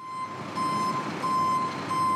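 Vehicle reversing alarm beeping: a steady high beep repeating in roughly half-second pulses with short gaps, over the steady noise of an engine and the outdoors.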